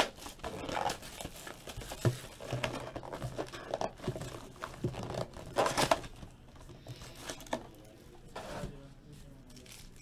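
Crinkling and tearing of packaging as a trading card box is opened by hand and a foil-wrapped pack is pulled out: irregular rustling bursts with a few sharp clicks of cardboard, loudest about two seconds in and again around six seconds.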